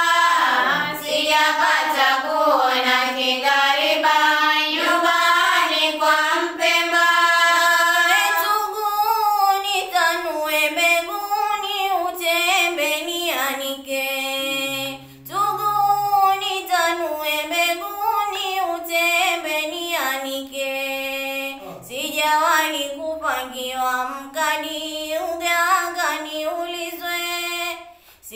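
A young girl singing solo without accompaniment: a slow melody of long held notes that bend and waver in pitch, with only brief breaks for breath.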